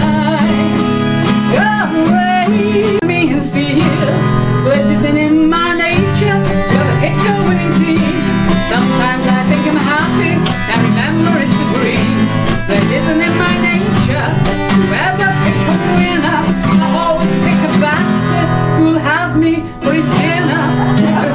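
A woman singing live, accompanied by two acoustic guitars, in a folk or country style.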